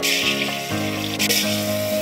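Water running from a wall tap and splashing onto a tiled floor, a steady hiss that swells briefly at the start and again about a second in, under soft background music with long held notes.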